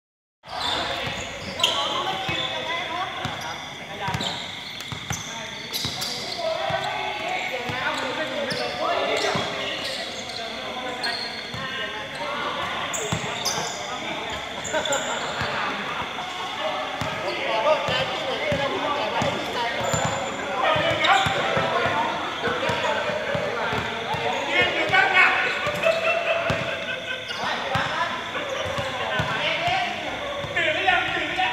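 A basketball bouncing on a hard court, with repeated short thuds, under the voices of players calling to one another.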